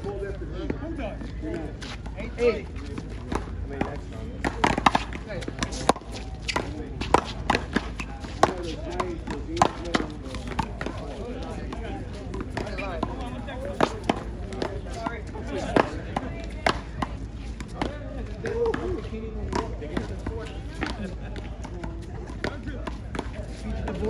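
Paddleball rally: a run of sharp cracks as the rubber ball is struck by wooden paddles and rebounds off the concrete wall. The hits come thick and fast for several seconds after about four seconds in, then grow sparse, with voices talking underneath.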